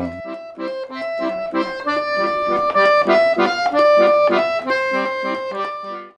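Accordion playing a tune of long held notes over short, evenly repeated chords underneath.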